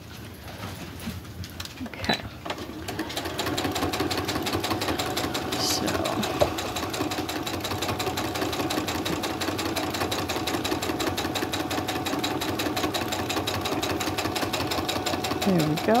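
Brother computerized sewing and embroidery machine stitching at a steady, fast pace with rapid, even needle strokes. It starts about two to three seconds in and stops just before the end.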